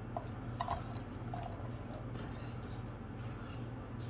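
Canned black beans sliding out of a tin can and dropping onto the food in a glass baking dish, giving a few faint soft clicks in the first second and a half over a steady low hum.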